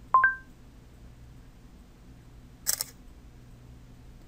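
A short two-note rising electronic beep, the phone's Google voice-recognition chime as AutoVoice stops listening. Nearly three seconds in comes a brief, quieter double click: the phone camera's shutter sound as Instagram takes the photo.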